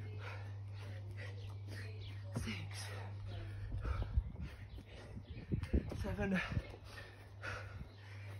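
A man breathing hard through burpees, with dull low thumps in the middle seconds as his feet and hands land on the grass, over a steady low hum.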